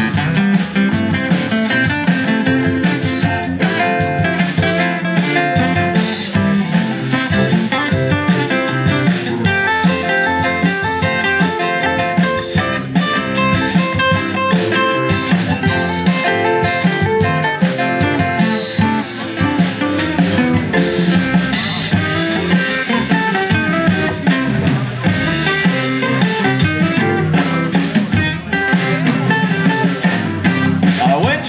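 Live band playing an instrumental break on acoustic and electric guitars in a steady, driving blues groove, with no singing.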